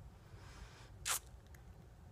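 Quiet room with a steady low hum, broken about a second in by a single short breath sound.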